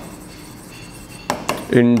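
Writing on a board: a quiet stretch, then two sharp taps of the writing tool against the board about a second and a half in.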